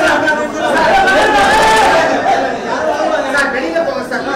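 Many people talking at once in a crowded room: loud, overlapping chatter, a little quieter in the second half.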